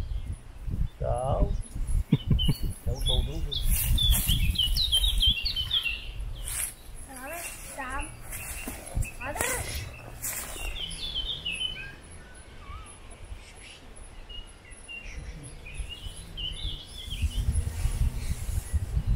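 Woodland songbirds singing, with several short, quick descending trilled phrases, over a steady low rumble.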